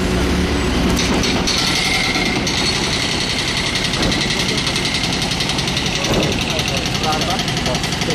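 Street traffic on a wet road: a steady hiss of vehicle noise with a low engine idling underneath, and voices near the end.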